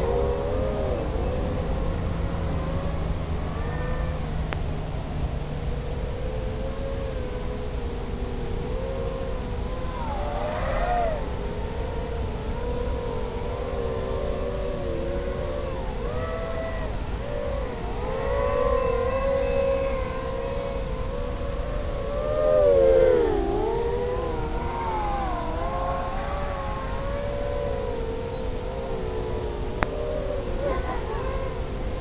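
FPV drone's electric motors whining in flight, the pitch wavering up and down as the throttle changes. There are several louder swells, the biggest about three-quarters of the way through with a sharp dip in pitch.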